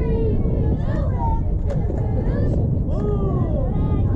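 Players and spectators calling and chanting at a distance, several voices overlapping, over a steady wind rumble on the microphone. A single sharp knock about a second and a half in.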